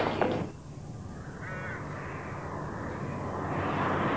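A crow cawing once over a low steady hum, after a short loud sound that cuts off about half a second in. A car engine grows louder near the end.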